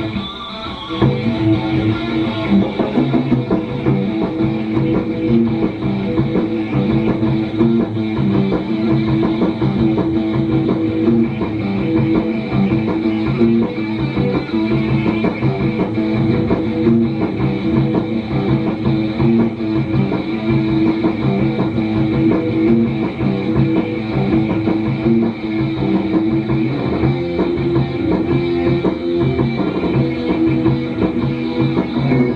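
Live three-piece rock band (distorted electric guitar, bass and drum kit) playing a heavy rock song, with a short break just after the start before the band comes back in. It is heard from an old videotape played through a TV and re-recorded, so the sound is dull at the top end.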